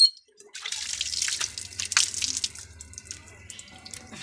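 Water from a hand pump splashing as a man washes his face in it, with irregular splats. It starts about half a second in after a brief hush and dies down near the end.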